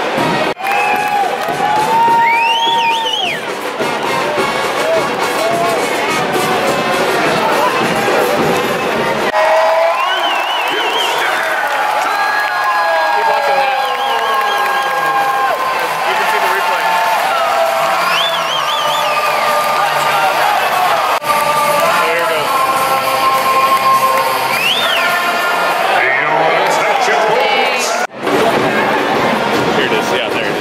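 Soccer stadium crowd cheering and clapping, with music and sung voices over it. The low rumble of the crowd drops away abruptly about nine seconds in.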